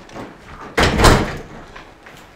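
A door shut hard: one loud bang a little under a second in, with fainter knocks before it.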